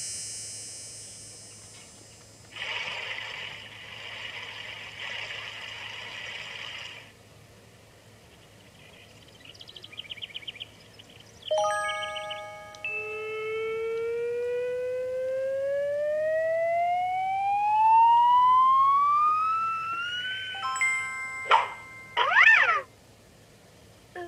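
Cartoon-style sound effects from a children's puppet show: a fading tone, a stretch of hiss, a quick ticking, then a long whistle-like glide of several tones rising together for about eight seconds, ending in sharp twangy boings.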